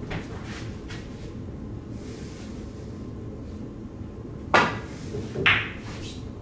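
Pool balls on a billiard table during a kick shot: a faint knock about a second in, then two sharp clicks of balls striking, the loudest about four and a half seconds in and another about a second later.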